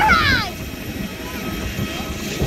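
A voice calls out briefly at the start over a steady low rumble of outdoor noise.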